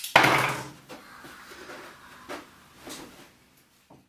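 A handgun's trigger pulled on a gun that jams: one sharp click near the start that rings out and fades over most of a second, followed by a few faint soft sounds.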